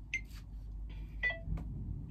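Two short high beeps about a second apart from a smartphone's recording countdown timer, counting down before the recording starts.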